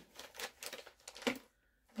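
Paper rustling with light clicks as sheets and craft tools are handled on a table, for about a second and a half, then stopping.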